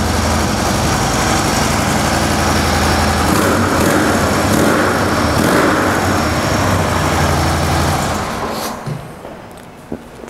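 2013 Harley-Davidson Ultra Limited's 103 cubic inch V-twin running steadily through its factory exhaust and slip-on mufflers, shortly after a cold start. The engine sound dies away a couple of seconds before the end.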